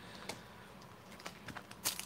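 Faint, sparse clicks and light taps of trading cards and a card pack's wrapper being handled, with a sharper click near the end.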